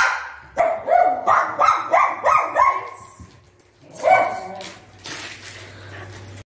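Small white Pomeranian dog barking angrily: about eight sharp barks in quick succession, then one more after a pause of about a second.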